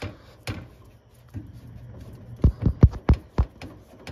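Hands working a spin-on oil filter loose, giving a few sharp metallic knocks and taps. Most come in a quick run of four or five about two and a half to three and a half seconds in.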